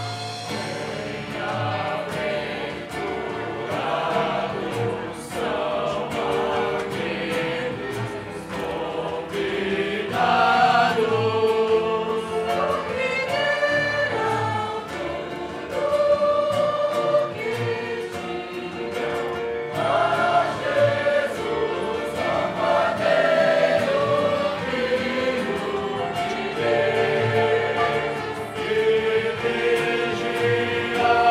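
A group of voices singing a Portuguese-language worship hymn with instrumental accompaniment and a steady low beat.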